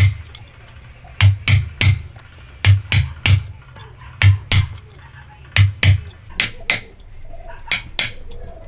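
Hammer striking a wood chisel to cut into a log: sharp knocks with a dull thud, about fifteen blows in quick groups of two or three.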